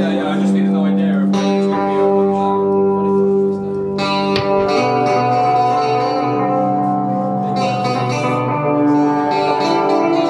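Electric guitar played through effects in long held, droning notes over other sustained instrument tones, the pitches shifting every second or few.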